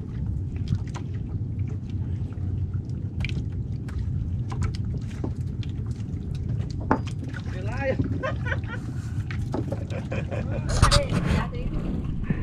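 Steady low rumble with water sloshing around a small outrigger fishing boat, and faint voices from nearby boats in the second half.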